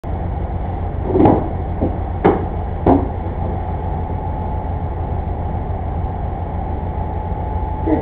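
Steady low hum and hiss from a surveillance camera's built-in microphone, with three short sharp sounds about one, two and three seconds in.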